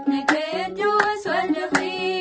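Three women singing a Tigrinya Orthodox Tewahedo hymn (mezmur) together, clapping their hands three times in even time, about a clap every 0.7 s, over a steady held low note.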